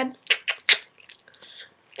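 Wrapper of an individually wrapped mini pad crinkling as it is handled: a few sharp crackles about half a second in, then faint rustling.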